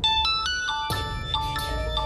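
A mobile phone ringing: its ringtone plays a quick melody of short, bell-like notes.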